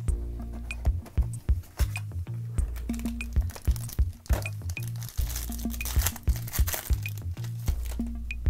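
Background electronic music with a steady beat. Over it, from about halfway through, the crinkling of a foil trading-card pack wrapper being peeled and torn open.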